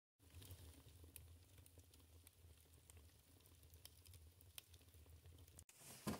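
Faint crackling and popping of split logs burning in a wood stove's open firebox, scattered sharp snaps over a low steady hum. It cuts off suddenly near the end.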